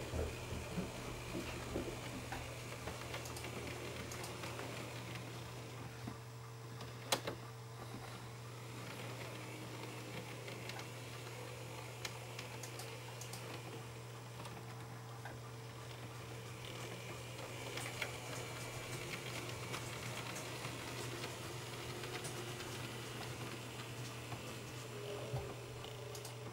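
N-scale model locomotive running along the track: a small electric motor whirring steadily, with scattered light clicks of the wheels over rail joints and turnouts, one sharper click about seven seconds in.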